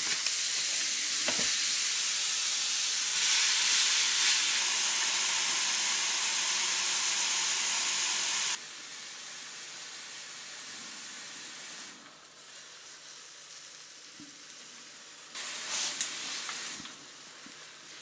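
Beef patties sizzling on the hot ribbed plates of a Silvercrest SKGE 2000 electric contact grill. The sizzle drops abruptly in level about halfway through and again a few seconds later, with a short louder spell near the end.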